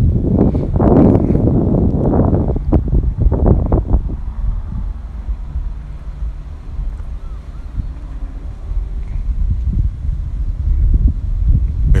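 Wind buffeting the microphone: a loud, gusty low rumble, strongest in the first few seconds, then easing to a steadier rumble.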